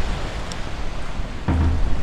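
Rough typhoon surf breaking and washing up a sand beach, heard as a steady rushing noise with a low rumble from wind on the phone microphone. A brief low thump comes about one and a half seconds in.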